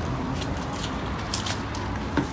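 Light metallic jingling of chain necklaces: a few brief clinks as the wearer gets down on his knees, over a steady low rumble.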